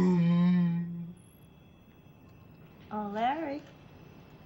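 A man's voice holding one long, steady, tuneless note, his attempt at singing, which stops about a second in. A short vocal sound with a rising-then-falling pitch follows about three seconds in.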